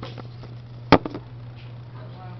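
A single sharp knock about a second in, followed by a couple of softer clicks: the camera being set down on a wooden desk. A steady low hum runs underneath.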